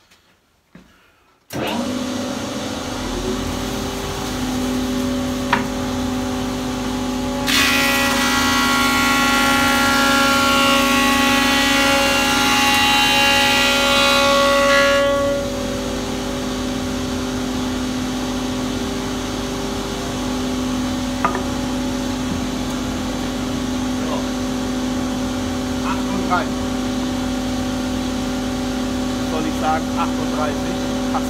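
Holzmann HOB 305 Pro planer-thicknesser switched on about one and a half seconds in, its motor and cutter block running steadily with a hum. From about seven to fifteen seconds a board is fed through on a 1 mm thicknessing pass, with a much louder cutting noise, after which the machine runs empty again.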